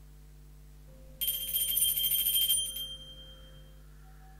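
Altar bells rung at the elevation of the consecrated host, marking the consecration. A quick run of strokes from small bells begins about a second in and lasts about a second and a half, then the high tones ring out and fade.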